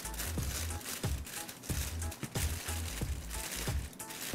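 Aluminium foil crinkling in quick, irregular crackles as hands fold and crimp it shut around a fish on a baking pan, with background music underneath.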